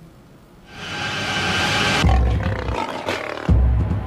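Dramatic report-opening music with a big cat's roar: a rising rush of sound that cuts off about two seconds in, then two deep booms.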